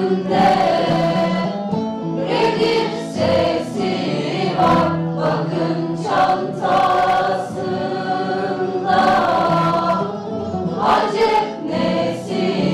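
Mixed choir of women and men singing a song together, in sustained phrases with brief breaks between them.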